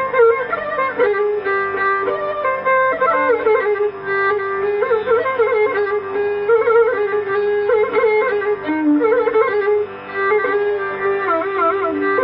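Carnatic instrumental music: chitraveena and violin playing a melodic line full of sliding, wavering pitch ornaments (gamakas) over a steady drone.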